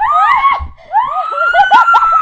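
A girl shrieking at close range: a short high-pitched cry, then a longer held shriek lasting more than a second.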